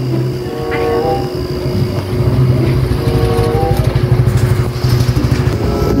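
A motorcycle engine running, its low pulsing growing louder from about two seconds in.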